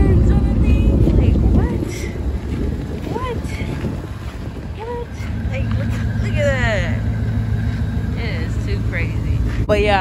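Wind rumbling on the microphone, strongest in the first second or so. A steady low hum comes in about halfway through, with short scattered chirps over it.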